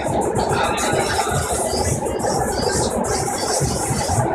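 Loud, steady running noise of a BART train car in motion, with music playing over it.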